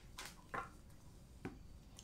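A few light clicks and rustles of a deck of oracle cards being handled as a card is drawn, the loudest about half a second in.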